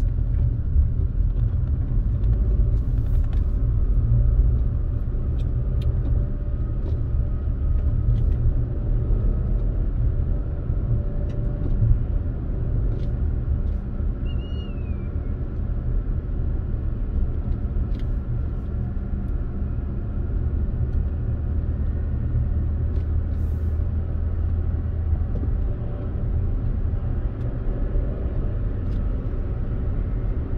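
Toyota RAV4 driving along a winding road, heard from inside the cabin: a steady low rumble of engine and tyre noise, with a few faint ticks.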